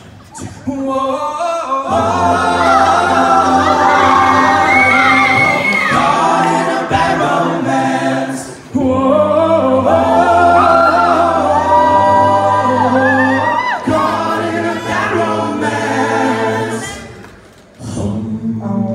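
Male a cappella group singing: sustained vocal chords under a soloist's melody line. It comes in two long phrases, with a brief drop about eight and a half seconds in.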